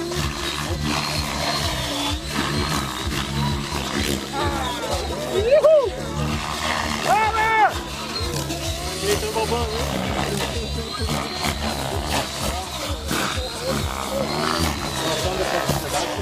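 Electric radio-controlled helicopter flying aerobatic manoeuvres: a steady rotor and motor whine, with two loud swooping sweeps up and down in pitch around the middle as the head speed and blade pitch change.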